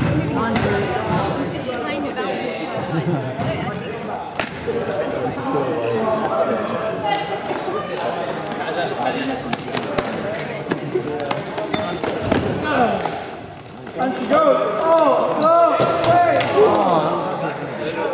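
Players' voices and calls ringing in a large sports hall, with running footsteps on the court floor and a few short, high squeaks of trainers, around a few seconds in and again after twelve seconds.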